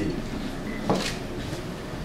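Steady room noise in a pause between speech, with a single soft knock about a second in.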